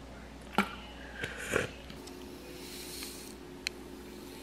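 Small plastic kitchen items being handled: a sharp tap about half a second in, a few short scuffs, then a soft hiss near the three-second mark and a small tick. The sounds come from water being poured from a plastic water bottle into a little plastic cup of soda powder and the mix being stirred with a spoon.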